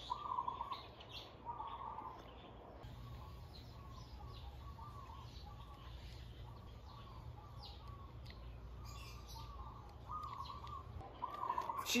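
Birds calling in the background: a faint, steady run of short, repeated warbling notes.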